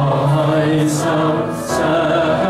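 Chinese worship song playing, voices singing long held notes over accompaniment, with a man singing along into a microphone.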